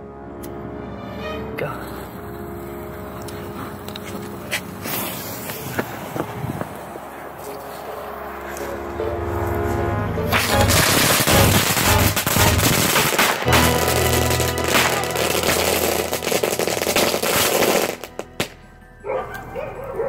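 Music plays throughout. From about ten seconds in, fireworks go off in a dense crackling hiss that stops at about eighteen seconds.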